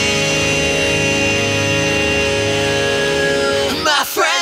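Pop-punk band music: an electric guitar chord held and ringing steadily, with little drumming under it. Singing comes back in near the end.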